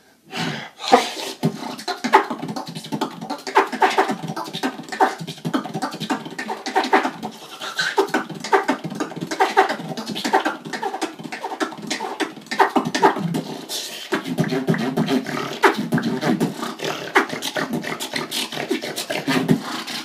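Solo human beatboxing: a fast, dense run of mouth-made percussion (kicks, snares and clicks) with pitched vocal tones woven through. It starts after a brief pause right at the beginning.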